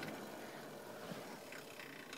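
Hot-air rework heater's blower just switched off, its airflow hiss fading away to a faint hiss.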